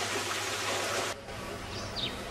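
Water running and splashing down a small pebble-stone garden waterfall, a steady rush that cuts off abruptly about a second in. After it comes quieter outdoor ambience with a short, high, falling chirp near the end.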